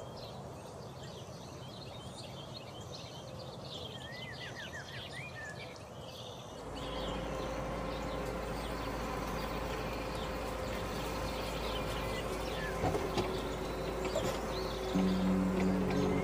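Quiet outdoor evening ambience with scattered bird chirps. About seven seconds in it gives way to soft, sustained background music over a low steady hum.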